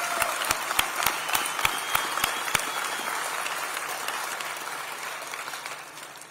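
Audience applauding, with sharp individual claps standing out over the crowd for the first couple of seconds. The applause then slowly dies away toward the end.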